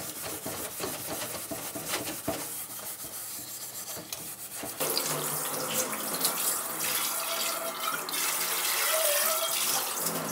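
Hand scrubbing inside an aluminium yukihira pan in water in a stainless steel sink. About five seconds in, the tap comes on and water runs steadily over the pan as it is rinsed.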